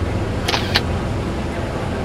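Steady low rumble of a harbour boat's engine under way, with two short sharp clicks about half a second in.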